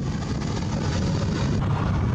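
Jet airliner flying past, its engines a steady low noise that grows slightly louder.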